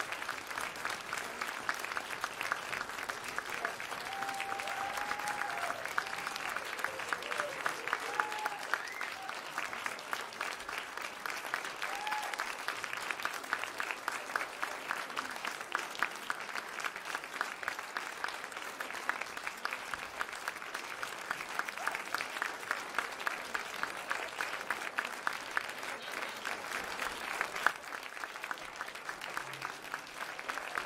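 Audience applauding: dense, steady clapping, with a few voices calling out in the first half.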